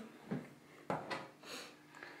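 A few faint clicks and a soft rustle of hands working the metal bracket and screw of a PCIe Wi-Fi card in a PC case's expansion slot, with one sharper click a little under a second in.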